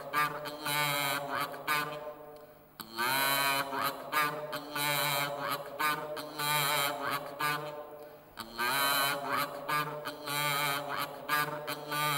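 A man's voice chanting a melodic Islamic recitation in long sung phrases with a wavering, ornamented pitch. The phrases recur, with short breaks for breath about two seconds in and again about eight seconds in.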